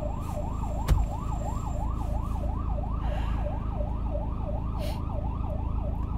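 Emergency vehicle siren in a fast yelp, its pitch sweeping up and down about three times a second, heard from inside a car over a steady low rumble of traffic. A single short knock about a second in.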